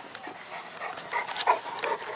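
Bullmastiffs panting at play, in short irregular bursts, the loudest about one and a half seconds in.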